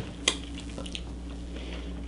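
Mouth sounds of someone tasting peanut butter licked off a finger, with one sharp click about a quarter second in, over a steady low hum.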